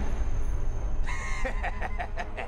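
A bird call starting about a second in: one held note, then a quick run of short broken notes, over a low rumble.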